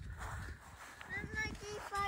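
Footsteps crunching on frost-covered grass, then a young child's faint, high-pitched voice about a second in.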